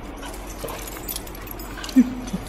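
Dogs playing, with a few faint short dog vocalisations, then one loud short bark or yelp right at the end.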